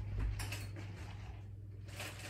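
Quiet room with a steady low hum and a few faint clicks and knocks of small items being handled on a counter, the loudest a little after the start.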